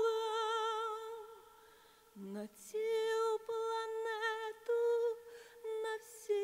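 A woman's solo voice, unaccompanied: a long sung note with vibrato fades away about a second and a half in. After a short pause she hums a slow, wordless line of separate held notes.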